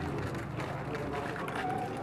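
Indistinct murmur of many overlapping voices from a crowd of people walking past, with no single clear speaker.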